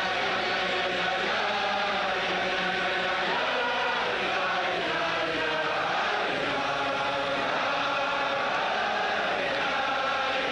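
A large crowd of Chassidic men singing a niggun together, many voices in unison, held steadily.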